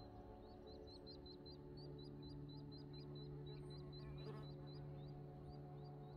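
Faint, steady ambient drone of layered held tones, with a deeper tone swelling in about a second in. Over it, a short high chirp repeats about four times a second.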